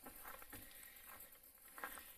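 Near silence: faint outdoor background with only a few small, faint sounds.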